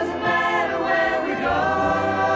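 Music: several voices singing together in long held notes.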